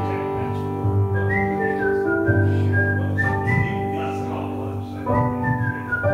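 Live acoustic music: a whistled melody, one clear note line stepping up and down, over strummed acoustic guitar and sustained keyboard chords.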